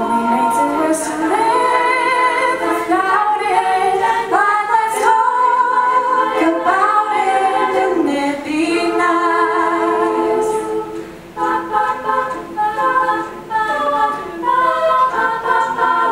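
Women's a cappella choir singing in close harmony, with no instruments: held, gliding chords at first, then short clipped chords from about eleven seconds in.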